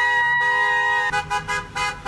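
Van horn sounding one long honk of about a second, then a string of quick short toots.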